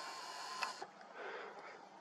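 Rustling handling noise on the camera's microphone as the camera is moved: a soft hiss that drops away just under a second in, then faint background noise.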